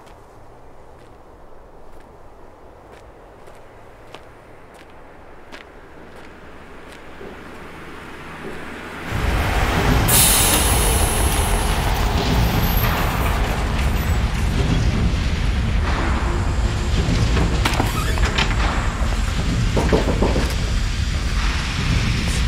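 Quiet outdoor street ambience, then about nine seconds in a sudden, loud, steady machine-shop din: an air compressor running, with a burst of hissing air about a second after it starts.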